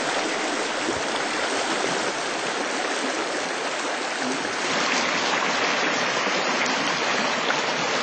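Small river flowing, a steady rush of water that gets slightly louder about halfway through.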